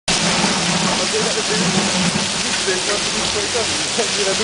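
Very heavy rain, a cloudburst, falling on a paved street: a loud, dense, steady hiss.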